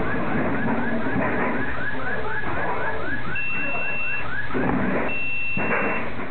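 Intruder alarm siren sounding a rapid series of rising whoops, about four a second, over banging and scraping as a safe is wrenched off a wall. About three seconds in, a second alarm adds a steady high beep that sounds twice; it was set off by the safe's removal, and the whooping stops shortly after it comes in.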